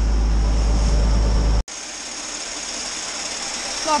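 Tractor engine running, heard inside the cab as a steady low drone that is cut off abruptly about one and a half seconds in. A quieter steady hiss follows.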